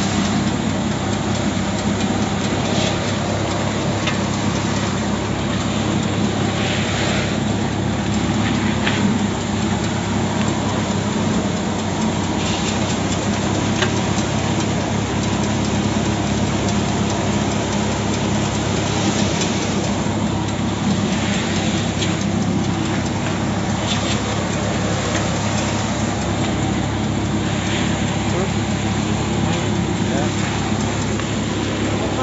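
Engine-driven paddy thresher running steadily at an even pitch while threshed rice grain pours from its chute into a metal basin.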